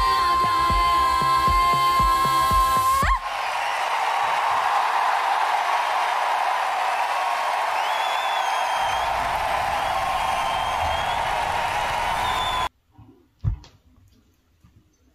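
A woman's long held sung note over a steady drum beat, which ends abruptly about three seconds in. A live audience then cheers and applauds. The sound cuts off shortly before the end, leaving a single short thump.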